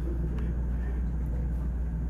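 A steady low hum of room background noise, with a few faint clicks.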